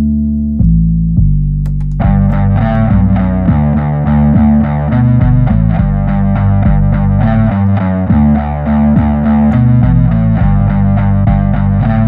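Playback of a low sub-bass line holding a few long notes. About two seconds in, a distorted electric bass phrase with quick note changes comes in over it: a Höfner bass run through a guitar amp simulator.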